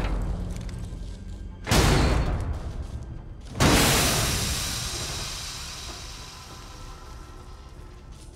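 Film soundtrack with two deep booming impacts about two seconds apart, each dying away slowly. The second fades out over several seconds into a low rumble.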